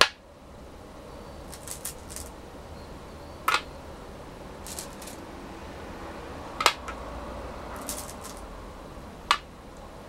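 Go stones being set down on a wooden go board: four sharp clacks about three seconds apart, with a few softer clicks between them.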